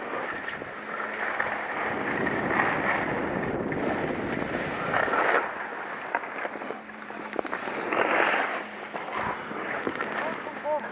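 Skis scraping and hissing over packed snow, with wind rushing across the camera's microphone; the sound swells in surges every few seconds as the skier turns.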